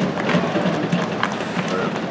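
Indistinct chatter of several spectators talking at once in a hockey arena, with a few sharp knocks.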